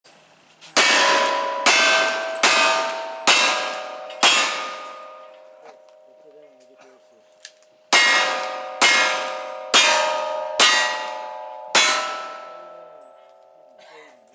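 Ten handgun shots in two strings of five, about a second apart, with a pause of about three seconds between strings. Each shot is followed by the clear, fading ring of a struck steel target. The heavy white smoke marks them as black-powder loads.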